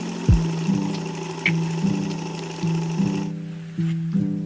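Electric sewing machine running steadily and stopping about three seconds in. Background music with repeated low plucked or piano notes plays under it.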